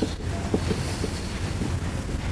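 Steady low hum of a meeting room's background noise, with a couple of faint knocks and light shuffling.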